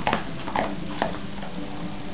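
A dog giving short whimpers: three brief sounds in about the first second.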